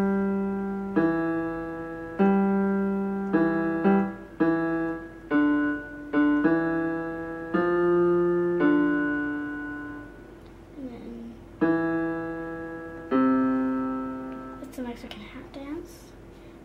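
Electronic keyboard played slowly and a little haltingly, one note or pair of notes about every second, each fading as it is held, with a lower note sounding under the tune. The playing pauses briefly about ten seconds in and again near the end.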